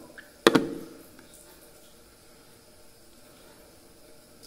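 A single sharp click about half a second in as a small cosmetic jar of face mask is opened and handled, followed by faint room sound.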